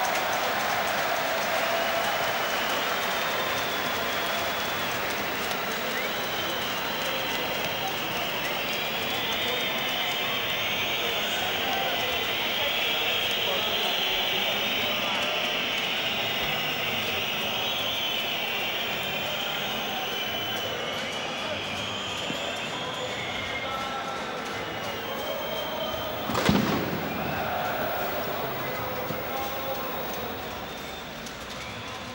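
Large football stadium crowd at half-time: a steady din of many voices. A single sharp bang about 26 seconds in is the loudest moment.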